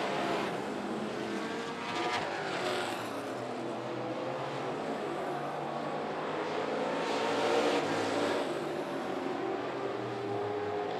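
Several dirt late model race cars running hard around a dirt oval, their engines rising and falling in pitch as they pass, loudest as a pack goes by about three quarters of the way through. A short sharp crack comes about two seconds in.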